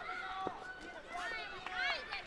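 Raised voices shouting in a fight arena, with one sharp knock about half a second in.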